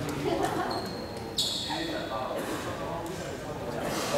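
Voices echoing in a large gymnasium during a stoppage in a basketball game, with a short high-pitched sound and a hiss about a second and a half in.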